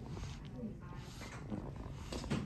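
Faint, brief voice-like sounds over a low steady background hum.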